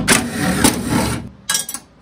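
Cordless power driver with a socket running as it backs out a fastener on the tailgate's sheet-metal lock cover plate. It stops about two-thirds of the way through, then gives a short second burst just before the end.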